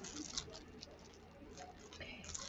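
Faint crinkles and soft ticks from the clear plastic wrap on a mouse mat as it is held and turned by hand, over a low steady hum.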